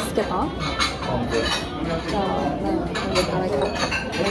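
Ceramic tableware and chopsticks clinking on a table: several light, sharp clinks as small sauce dishes are handled, over a background of voices.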